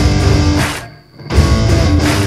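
Instrumental hard rock with electric guitar. The music stops for a moment about a second in, then the band comes straight back in.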